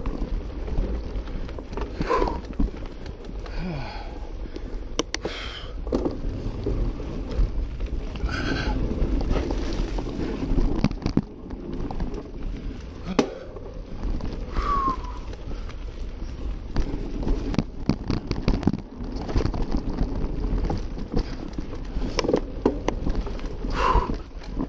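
Mountain bike ridden over a sandy dirt trail: a steady rumble of tyres and wind buffeting the camera, with frequent rattling knocks from the bike and a few short squeaks.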